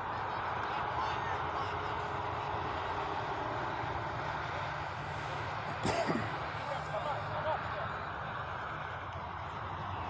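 Steady outdoor background noise with a low hum under it during a youth soccer game, with faint distant voices of players and one sharp thump about six seconds in.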